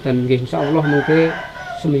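A man talking, with a rooster crowing once in the background for about a second, fainter than the voice.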